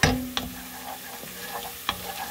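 Minced garlic sizzling in oil in a stone-coated pot while a wooden spoon stirs it. A few sharp knocks of the spoon against the pot stand out, the loudest right at the start, another shortly after and one near the end.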